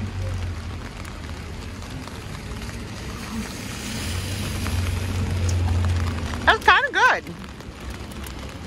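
Steady hiss of rain on a wet city street with a low traffic rumble that swells through the middle and then fades. About six and a half seconds in, a brief high-pitched laugh cuts in, the loudest sound.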